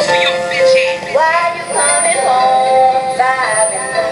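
Live experimental music: a pitched melody line whose notes swoop upward about a second in and again near two seconds, then settle into held notes.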